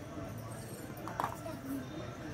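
A matchstick struck about a second in, a short scratch, to light the fire in a metal bucket, with faint low voices underneath.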